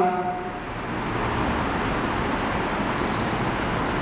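A steady rushing background noise, with a few faint high squeaks of a marker writing on a whiteboard in the middle.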